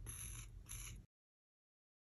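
Faint background noise for about a second, then the sound cuts off to complete silence.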